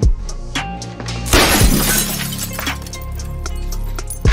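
Car windshield glass shattering under a blow, one loud burst about a second in, over background music.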